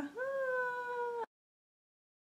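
A woman's high-pitched, drawn-out vocal note, a held 'ooh' that slides up at the start and then stays nearly level. It cuts off abruptly about a second and a quarter in.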